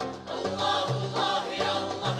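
Mixed choir singing, accompanied by piano playing low held bass notes and a hand-played goblet drum (darbuka).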